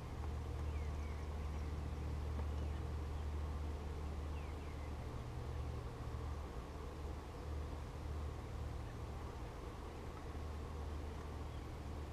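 Honeybees buzzing steadily around an opened hive over a low outdoor rumble, with a few faint bird chirps.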